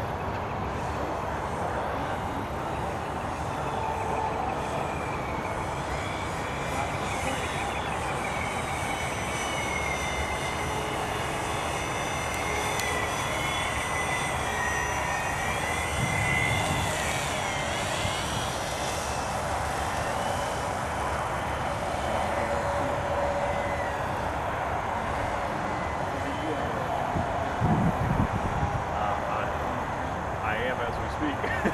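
A model autogyro flying overhead, its small motor whining steadily, the pitch rising and falling as it passes. Brief low rumbles come near the end.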